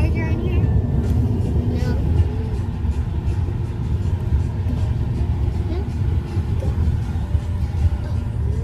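Steady low vehicle rumble, loud and constant, with faint voices and music underneath.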